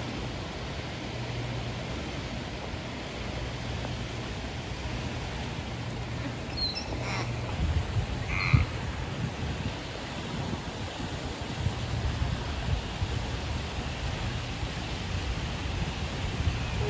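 Steady rush of water in an outdoor aquarium pool, with a low rumble under it. A few short bird-like calls and a bump come about seven to eight and a half seconds in.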